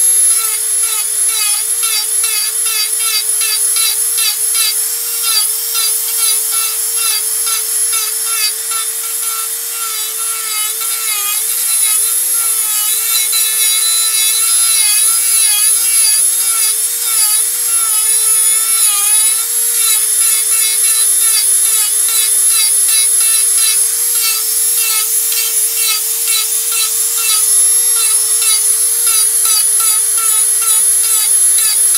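Handheld rotary tool spinning a small drum bit that grinds into a pine dummy head: a steady high motor whine whose pitch wavers and dips as the bit bites into the wood, over a dry, raspy grinding of wood.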